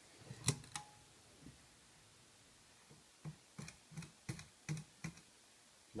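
Table lamp's switch clicked again and again by a small child's hand: a couple of sharp clicks about half a second in, then about eight quick, irregular clicks between three and five seconds in, ending with the lamp switched off.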